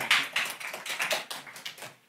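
Audience applauding: a dense patter of claps that thins and fades, dying away near the end.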